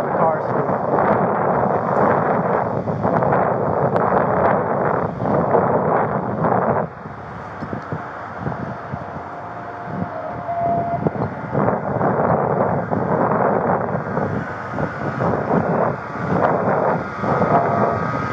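Loud rumbling wind and handling noise on a police body-worn camera's microphone, with road traffic passing. It eases for a few seconds in the middle, then comes back.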